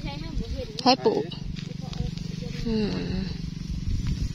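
Short spoken words over a steady low hum.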